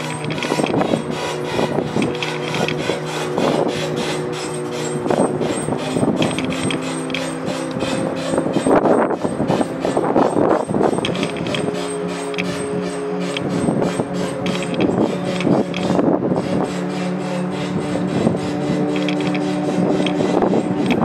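Cruise-ship lifeboat davit winch hoisting the lifeboat back aboard: a loud cranking, a rapid continuous clatter.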